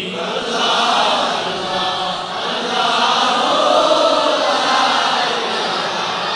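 A congregation of men chanting together, many voices blending into one dense, steady wash: a dhikr chant repeating the name of God, "Allah".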